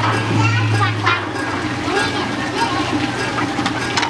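Children's voices chattering and calling out, high-pitched and overlapping, over water pouring from a spout into a shallow play trough.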